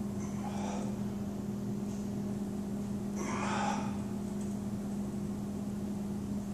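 Steady low machine hum in a small room, with a short breathy hiss a little over three seconds in.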